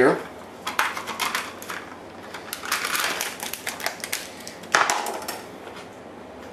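Plastic yogurt tub lid being pulled off and handled: clusters of light clicks and crinkling rustles, then one sharper knock near the end as something is set down on the counter.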